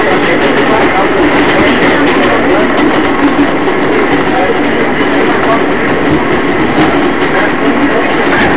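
Running noise of an R188 subway car heard from inside the car as the train travels at speed, a loud, steady rumble of wheels and motors.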